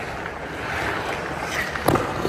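Hockey goalie skates scraping and carving across rink ice, a steady hiss that swells through the middle, with one sharp knock near the end as the goalie drops to the ice.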